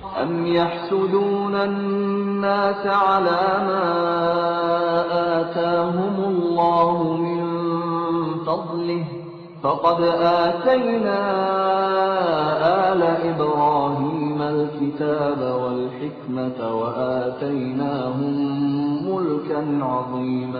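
A male reciter chanting Quran verses in Arabic, slow and melodic, with long held notes. The recitation comes in two long phrases with a short breath about halfway through.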